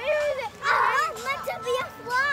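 Children at play, shouting and squealing in high voices, with a loud shriek in the first second.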